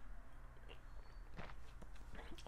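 A person drinking from a glass mug: faint swallowing and a few soft clicks and knocks as the mug is sipped from and lowered, over a low steady room hum.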